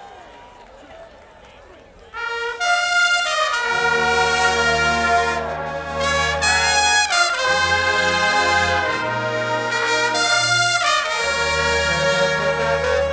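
College marching band brass section coming in loud about two seconds in, after a quieter stretch of background noise. It plays long held chords over a strong low-brass bass, shifting to a new chord every second or two.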